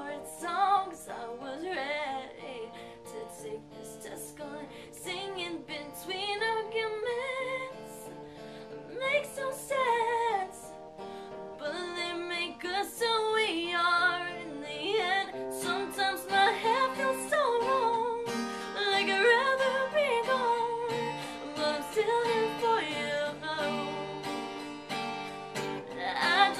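A woman singing, accompanied by her own strummed acoustic guitar; the playing grows fuller and louder about halfway through.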